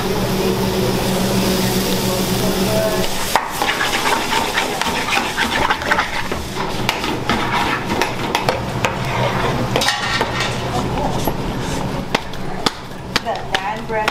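Vegetables sizzling in an aluminium sauté pan on a gas burner while being stirred, with frequent sharp clinks and scrapes of metal utensils against the pans. A steady low hum sits underneath for the first few seconds.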